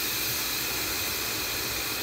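Instant Pot electric pressure cooker venting steam through its open venting knob during a quick pressure release: a steady hiss. Little pressure is left in the pot, so the release is nearly done.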